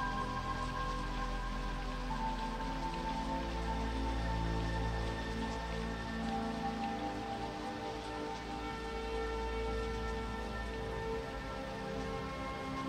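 Steady rain falling, mixed with slow, sustained synthesizer chords of the film score that shift every few seconds.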